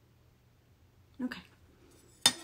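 Mostly a quiet room with a faint low hum. About a second in, there is one short voiced sound, like a brief 'mm' from a woman.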